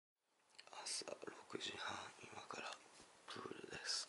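A man whispering a few words.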